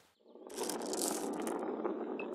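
A marble rolling down the spiral ramps of a toy marble-run tower: a steady rolling rattle that starts about a quarter second in.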